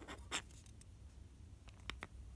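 Faint handling noise of a small white plastic model part being moved over a cutting mat, with light scratching and two soft taps, one shortly after the start and one near the end.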